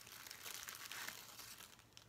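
Clear cellophane wrapper crinkling as a bath bomb is pulled out of it by hand, faint and thinning out near the end.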